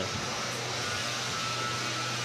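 Spun-up combat robot weapons, a vertical disc spinner and a drum, running steadily with a low hum and a faint whine. There are no hits.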